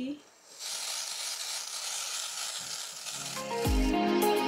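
Aerosol can of black root-concealer hair spray hissing in one continuous spray of about two and a half seconds, starting about half a second in. Background music with a beat comes in near the end.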